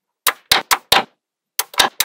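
Small magnetic balls snapping onto a slab of magnetic balls with sharp clicks: a quick run of four clicks in the first second, then, after a short gap, more clicks near the end.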